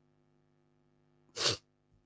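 A man's single short sneeze into a close microphone, about one and a half seconds in.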